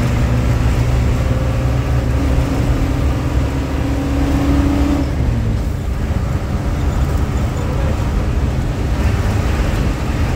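Inside a moving coach bus's cabin at highway speed: steady low engine and road rumble, with a humming tone that holds for about three seconds in the first half.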